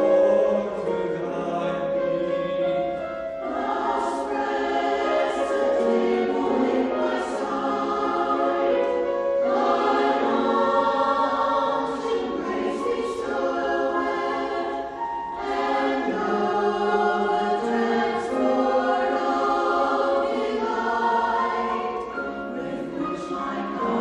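Mixed church choir of men's and women's voices singing together, with new phrases starting about every six seconds.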